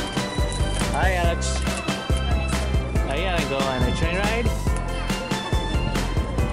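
Background music with a steady beat. A voice is heard over it briefly about a second in, and again from about three to four and a half seconds in.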